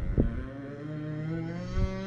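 A person's long, drawn-out groan, held for about two seconds and rising slightly in pitch, with a short knock just after it begins.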